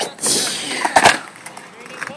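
A toddler on a playground swing sweeping close past the microphone: a brief rush of air about a quarter-second in, then short sharp sounds about a second in.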